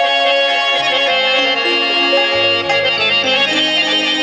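Harmonium playing a melody of held reed notes that step from one pitch to the next, in a Pashto folk-style instrumental opening.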